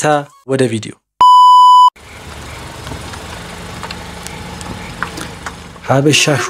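A single loud, steady electronic beep lasting well under a second, like a censor bleep, after a last word of speech. It is followed by a quieter steady low rumble and hiss.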